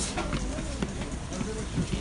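Many footsteps of pallbearers and a walking crowd shuffling along together, with a low murmur of voices.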